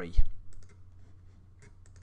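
A spoken word ends, followed at once by a brief low thump, the loudest sound. Then come a few faint computer mouse clicks, about half a second in and again around a second and a half.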